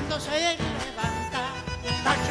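Argentine folk band playing a chacarera doble live, a bombo legüero drum beating under a male voice.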